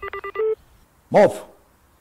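Telephone dial tone with a quick run of short keypad dialing beeps over it, ending about half a second in.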